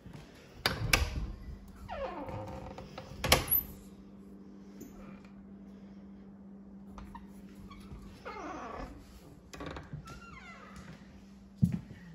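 Double pantry doors opened, with sharp clicks from the knobs and latch just under a second in and another sharp knock a little after three seconds. A steady low hum runs under most of it, and a few short gliding vocal sounds come in the later half.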